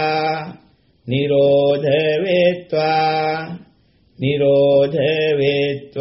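A man chanting one Pali phrase with the word "nirodha" over and over, in a steady, near-monotone Buddhist recitation. Phrases are broken by short pauses: one ends about half a second in, the next runs from about one to three and a half seconds, and another begins about four seconds in.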